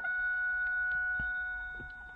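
A steady high-pitched whine that slowly fades and stops near the end, with a few faint clicks.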